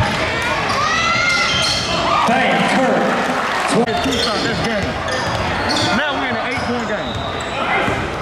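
A basketball being dribbled on a hardwood court, the bounces ringing in a large gym, over constant indistinct shouting from players and spectators.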